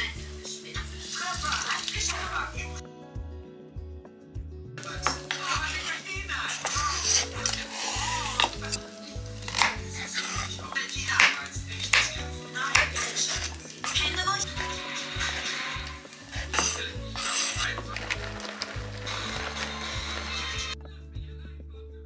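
Background music with a steady bass line, over a kitchen knife chopping carrots and cucumber on a wooden cutting board: repeated sharp knife strikes on the board, with clinks of dishes.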